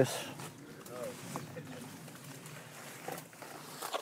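Faint footsteps and rustling of people pushing through dense, leafy undergrowth, with a few light crackles.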